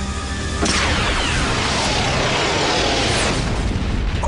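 Sci-fi cartoon battle sound effects over a music score: a weapon blast, then about half a second in a sudden explosion that rumbles on with falling whooshes.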